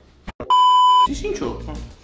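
An edited-in electronic bleep: one steady, high tone lasting about half a second, starting about half a second in, of the kind laid over a word to censor it. A man's voice follows.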